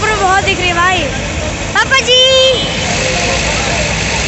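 Several people's voices talking and calling out, with one loud high-pitched call about two seconds in, over a steady low rumble.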